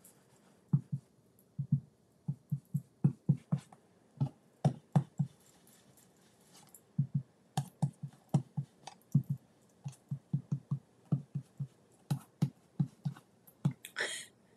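Blending brush dabbing ink onto kraft cardstock pieces: dull taps in quick runs of two to four a second, about three dozen in all, with a pause of a second or so near the middle.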